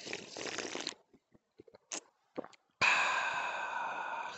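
A sip of coffee from an insulated mug with a slurp of air, a few small clicks, then a long voiced exhale, a sigh, starting about three seconds in.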